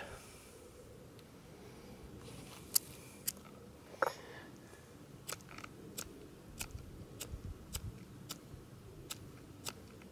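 Small SOL spark striker being struck over and over at a roughed-up WetFire tinder cube, making short, sharp scratchy clicks. They come singly at first, then about twice a second through the second half. The tinder is not catching the sparks.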